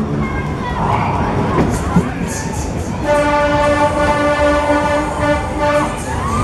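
Sobema discotrain fairground ride running, with a steady train-horn tone sounding for about three seconds from halfway through. Before the horn, rising and falling wails sound over a noisy mix.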